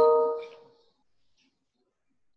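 A chime: several clear tones struck together at once, ringing out and fading away within about a second.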